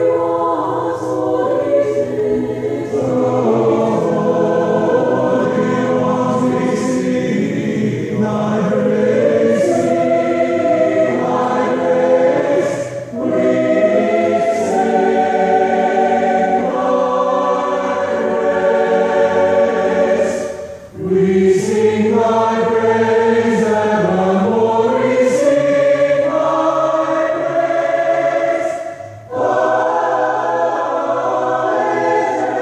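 College chorale choir singing a sacred choral piece in sustained phrases, with short breaks between phrases about 13 and 21 seconds in and again near the end.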